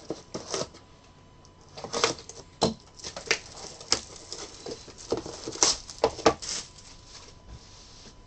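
Shrink-wrap plastic being torn and peeled off a trading card hobby box: crackling and crinkling in a run of short bursts, loudest about five to six and a half seconds in.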